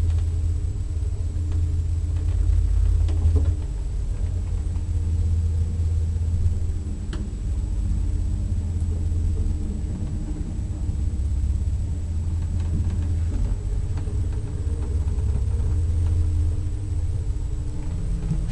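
Vintage Unilift elevator running: a steady low rumble with a hum from the drive, and a few light clicks.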